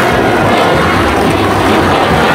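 Background music: a dense, steady droning passage with held tones.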